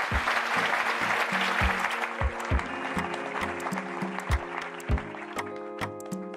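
Audience applause fading away over the first few seconds as background music with a steady drum beat comes in. Sustained synth notes and sharp ticking percussion take over near the end.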